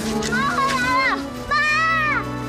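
A child calling "mama" twice in drawn-out, very high-pitched cries that fall away at the end, over soft background music.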